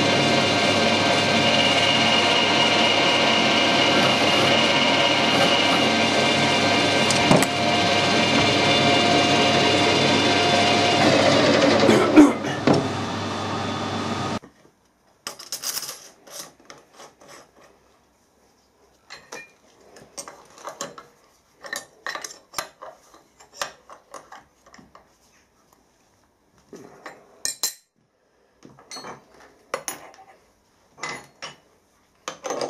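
Metal lathe running steadily with a workpiece spinning in the chuck, its tones falling as the spindle slows about 11 seconds in, with a knock just after. It cuts off suddenly, and the rest is scattered metal clinks and knocks as a steel collet block is handled and set in a milling machine vise.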